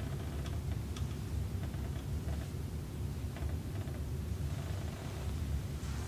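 Steady low room hum, with a few faint ticks and rustles of hands moving over a shirt.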